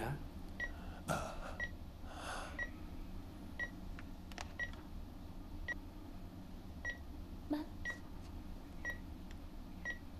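Hospital patient monitor beeping steadily about once a second, a short high tone each time, over a low hum.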